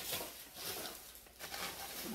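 Faint rustling and handling sounds of someone reaching down to pick up an item.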